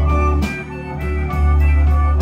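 Electric blues band playing an instrumental passage: bass line and drums keeping a steady beat under electric guitar, an organ-voiced keyboard and harmonica.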